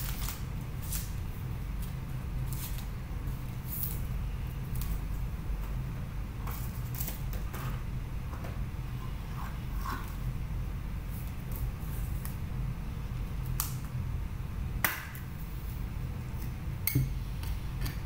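Trading cards and rigid plastic card holders being handled and set down: scattered soft clicks and slides, with one sharper click about fifteen seconds in, over a steady low hum.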